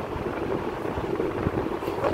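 Steady low rumble and hiss of background noise.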